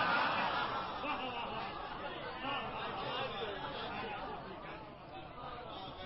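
Audience in a hall reacting to a satirical couplet with a wash of overlapping voices and laughter, dying away over several seconds.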